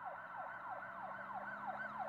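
Faint siren-like yelping tone, a rapid series of pitch sweeps, each falling away, about four a second.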